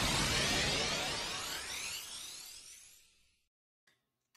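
Edited-in transition sound effect: a noisy whoosh with a shimmer rising in pitch, fading away over about three seconds, then silence.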